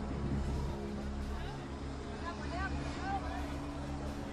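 Outdoor event ambience: a steady low rumble with distant shouting voices, the shouts coming more often in the second half.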